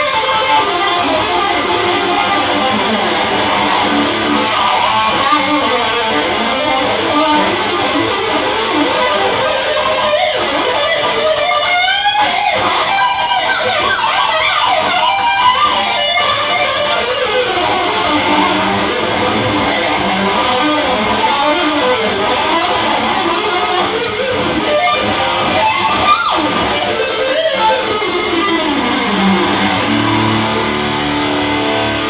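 Electric guitar with EMG pickups played as a fast metal shred solo, a 1970s B.C. Rich Virgin through a Marshall amp. Rapid runs of notes are broken by swooping pitch bends from the Floyd Rose whammy bar, with a long falling dive near the end.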